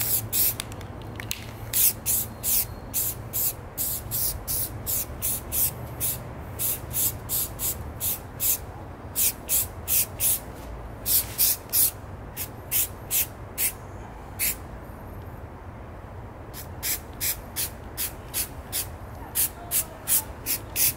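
Rust-Oleum camouflage aerosol spray paint can sprayed in many short hissing bursts, about two a second, with a pause of about two seconds about three-quarters of the way through. A low steady hum sits underneath.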